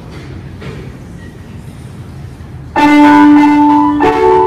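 Grand piano: after a few seconds of low room noise, the opening notes of an etude in D major are struck loudly about three-quarters of the way in and ring on.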